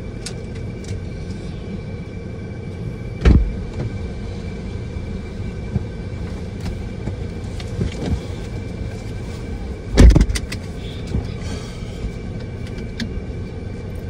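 Steady low hum inside a parked car's cabin with the engine running. A thump about three seconds in, then a louder one about ten seconds in as the passenger gets in and the car door shuts.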